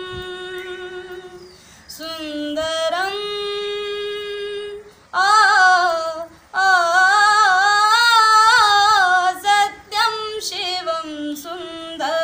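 A woman singing unaccompanied, holding long notes with short breaks for breath. Her loudest phrase, higher and wavering, runs from about five seconds in until near the end.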